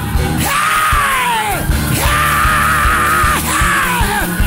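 A man yells two long, high, held cries through a church sound system over loud band music with drums; the first cry falls away at its end, and the second is held with a wavering pitch.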